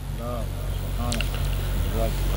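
A low, steady rumble that grows slightly louder, with two faint brief snatches of a man's voice during a pause in the amplified speech.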